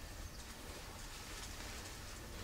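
Quiet room tone: a faint, steady hiss with a low hum, and no distinct sound event.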